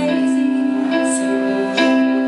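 Live song played on keyboard, held chords changing about a second in and again near the end, with little or no singing.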